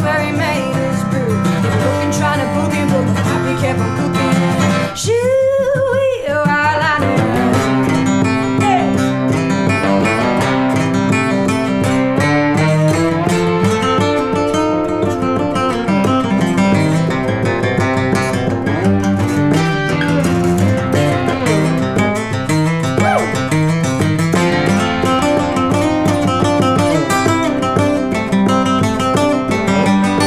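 Instrumental break of a country song: an acoustic guitar strums the rhythm while a lap steel guitar plays a slide solo, its notes gliding up and down in pitch.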